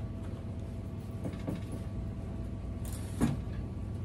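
An old TV set's plastic cabinet being handled and shifted on a glass-topped table: a few light knocks, then one louder thump a little past three seconds in, over a steady low rumble.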